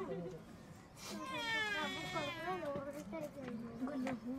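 People's voices, unclear and wordless to the recogniser, including a high-pitched voice that rises and falls from about a second in.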